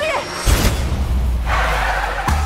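A heavy thud about half a second in, as a body hits the roadway after a parachute fall, followed by a held low rumble and a short hiss, under dramatic film-trailer music.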